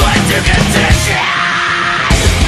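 Loud heavy rock music; the pounding drum beat drops out about halfway through while a held note carries on.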